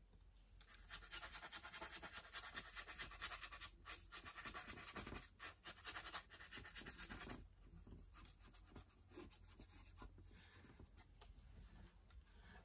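Paintbrush working thin oil paint on the palette and canvas panel in quick, short strokes: a faint, rapid scratching that goes quieter a little past halfway, with a few more strokes near the end.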